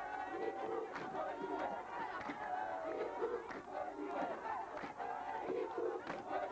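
A crowd of many people shouting at once, their voices overlapping in a dense, continuous din.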